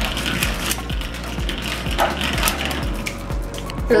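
A lone Beyblade spinning top spinning in a hardened-chocolate bowl stadium, its tip rattling on the chocolate surface, over background music with a steady beat of about four thumps a second.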